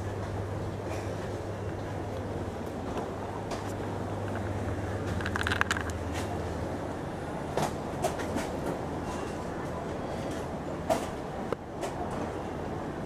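Steady low hum of indoor airport-terminal ambience, with a few light clicks and knocks scattered through it.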